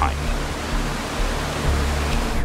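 Steady rush of water pouring down into a concrete inlet shaft, with a low music bed underneath.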